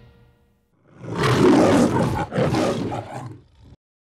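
A loud roar in two surges, starting about a second in and cutting off abruptly near the end.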